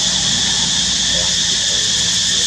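A steady, high-pitched hiss that does not change, with faint voices low in the background.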